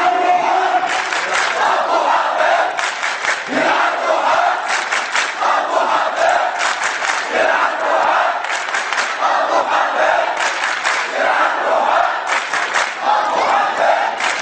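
A large crowd of men chanting in unison, one short call repeated about every two seconds, each call carrying a few sharp accents.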